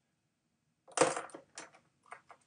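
Plastic pens clattering against each other and a hard surface as one pen is put down and another picked up: one loud clack about a second in, then a few lighter clicks.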